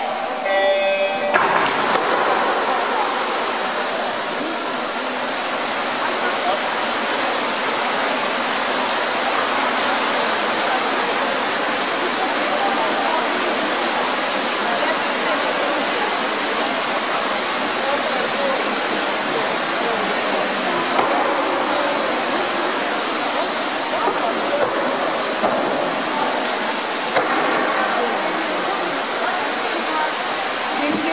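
A short electronic start tone, then a sudden burst of noise as the finswimmers hit the water. After that comes a steady, echoing din of spectators shouting and cheering mixed with splashing from the swimmers' fins, ringing in the indoor pool hall.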